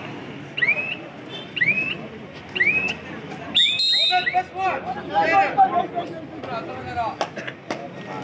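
Short rising whistled chirps, about one a second, then a shrill whistle blast a little before halfway, followed by loud shouting over crowd noise at a kabaddi match. The blast comes as the raid ends and points are scored.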